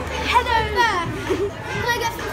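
A boy's voice calling out without clear words, with a long falling cry about half a second in and more vocal sounds near the end.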